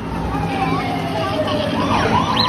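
Show audio of a Monsters, Inc. dark ride: a long falling tone and warbling electronic effects over the low rumble of the moving ride vehicle.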